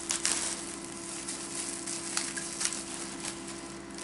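Light crinkling and small clicks of plastic wrapping and a small battery light being handled in the fingers, a few sharper crackles about a quarter second in, over a steady low hum.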